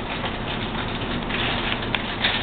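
Plastic liner bag of a cereal box crinkling and rustling as it is pulled open, with a sharp crackle near the end.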